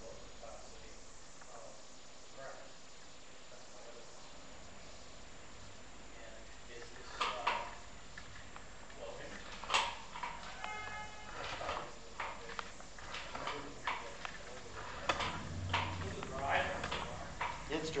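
Low hiss for the first few seconds, then scattered knocks and clicks with faint, indistinct talking, and a brief beep a little past halfway.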